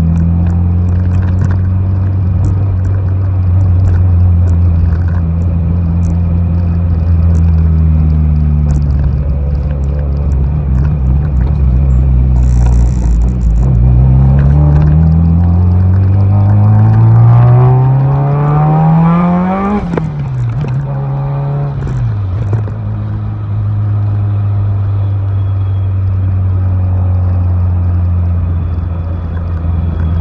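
Honda Civic coupe's four-cylinder engine heard from inside the cabin while driving: steady running, then the revs climb for several seconds before dropping sharply at a gear change about two-thirds of the way in, and the engine settles back to steady cruising.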